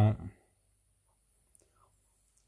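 A man's voice finishes a word shortly after the start, then near silence.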